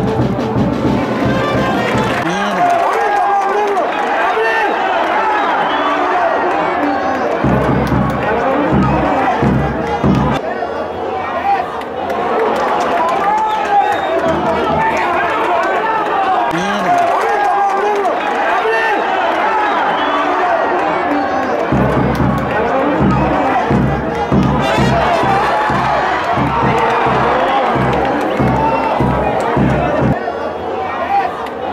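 Many voices chanting or singing together, with a regular drum beat coming in for a few seconds near the middle and again through the last third.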